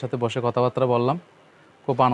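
Speech only: a man talking, stopping for a pause of under a second about halfway through before speaking again.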